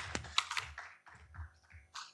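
Faint, scattered hand claps from an audience, a few irregular claps rather than full applause.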